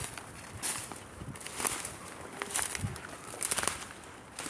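Footsteps crunching and rustling through dry leaf litter on a forest floor, about two steps a second, as a person walks quickly.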